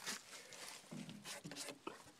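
Quiet, with a man's faint low speech or mumbling about a second in and again briefly near the end; no engine running.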